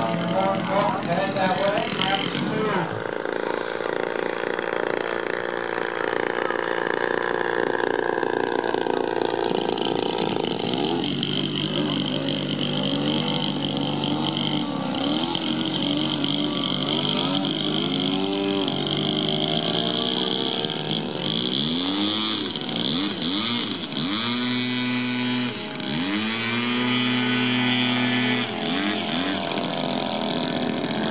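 A radio-controlled aerobatic airplane's engine and propeller, in flight. Its pitch rises and falls over and over as the throttle changes through the manoeuvres, with a run of quick swoops near the end.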